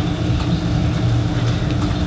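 Steady low rumble with a faint constant hum, the background noise of the hall's air handling, picked up between phrases of the talk.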